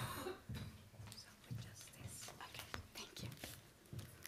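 Faint, indistinct murmured voices with scattered small clicks and rustles of handling, starting with a brief breathy rustle.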